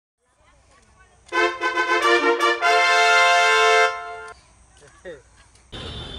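A short brass-like musical phrase: a run of quick notes followed by one long held note that fades out about four seconds in. A steady background of outdoor noise comes in near the end.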